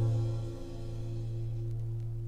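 The final strummed acoustic guitar chord of a folk song ringing out and slowly dying away, its level dropping about half a second in.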